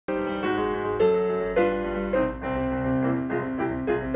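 Piano being played: a slow piece of chords, a new chord struck every half second to second, with the notes held and ringing together.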